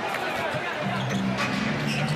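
A basketball being dribbled on a hardwood court while arena music plays steady held low notes, starting about a second in.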